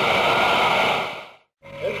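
A crowd applauding, a dense din that is cut off by a quick fade just past the middle.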